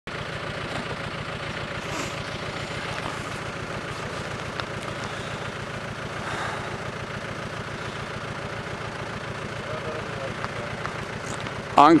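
Vehicle engine running steadily with tyre and road noise while driving at an even speed. A voice begins right at the end.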